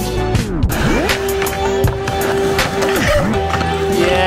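Music with a beat, over a skateboard rolling back and forth across a backyard mini ramp.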